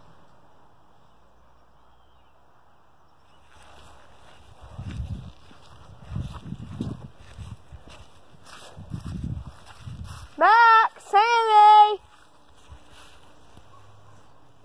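Walking footsteps and phone-handling rustle, then two loud drawn-out vocal calls close to the microphone near the end, each under a second and holding one pitch: a person calling out.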